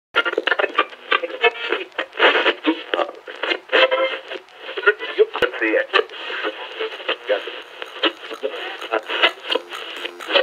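Intro of a bass house track, filtered so it sounds thin and radio-like with no bass. It carries a chopped vocal sample.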